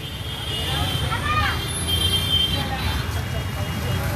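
Street ambience: a steady low rumble of road traffic, with a distant voice speaking briefly about a second in.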